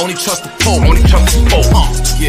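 Hip hop track: rapped vocals over a heavy 808 bass beat. The bass drops out briefly and comes back in about half a second in.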